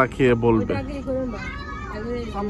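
Speech: a man talking, over a low steady rumble.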